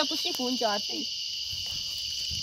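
A steady, high-pitched chorus of insects shrilling without a break, the loudest continuous sound, with a man's singing voice over it in the first second.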